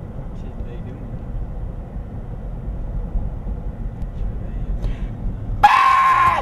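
Steady low rumble of a car's cabin and road noise, with faint voices. Loud music starts suddenly near the end.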